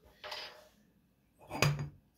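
Two short knocks of glassware being handled, a beer glass and bottle picked up and moved, about a quarter second in and again, sharper, near the end.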